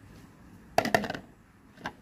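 Metal spoon knocking against a clear jar while chilli paste is scraped off into it: a quick cluster of taps a little under a second in, then one more near the end.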